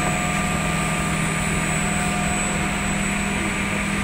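S8-S468JP automatic edge banding machine running with a steady hum, a few constant higher tones held over it.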